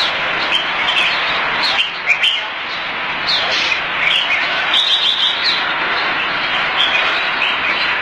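Red-whiskered bulbul singing: short, quick chirping phrases repeated throughout, over a steady, dense noisy background.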